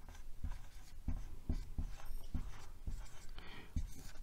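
Marker pen writing on a whiteboard: a quick run of short separate strokes as a word is printed out in capital letters.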